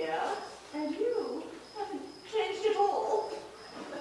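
Wordless vocal exclamations from actors on stage, drawn out and sliding up and down in pitch, in several short bursts with gaps between.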